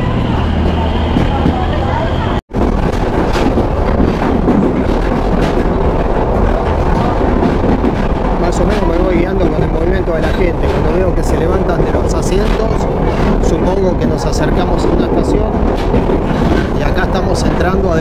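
Loud running noise of a diesel-hauled passenger train at speed, wheels and carriage rattling with wind on the microphone held out beside the carriage. The sound drops out for an instant about two and a half seconds in.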